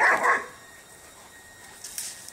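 A dog barking once, loud and short, in two quick pulses over about half a second, during a rough play-fight between dogs.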